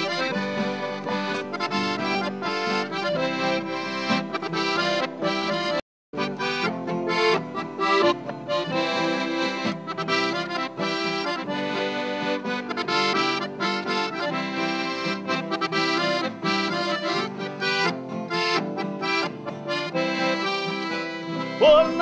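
Piano accordion playing an instrumental break of a sertanejo moda, with acoustic guitar accompaniment. All sound drops out for a split second about six seconds in.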